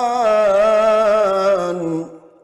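A man reciting the Quran in the melodic tilawat style, holding one long wavering note that slides down and stops near the end, with a short reverberant tail.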